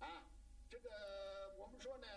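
Quiet speech: a man's voice, with one syllable held and drawn out for about a second near the middle.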